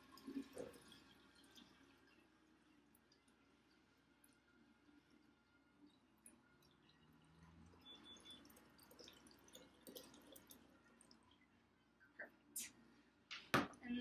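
Faint trickle of water poured from a plastic pitcher into a glass jar. Near the end, a couple of sharp knocks as the pitcher is set down on the counter.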